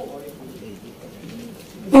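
Faint, low murmur of voices in a hall, then a loud voice over a microphone breaking in near the end.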